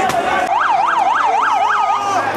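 Police car siren in a fast yelp, about four rising-and-falling sweeps a second, starting abruptly about half a second in and settling onto a steady tone near the end. Crowd noise and voices come just before it.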